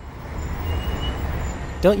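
City street ambience: a low, steady traffic rumble that fades in, with a voice starting near the end.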